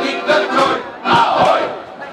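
A men's shanty choir ending a song with a loud group shout, the biggest about a second in, after the last sung notes.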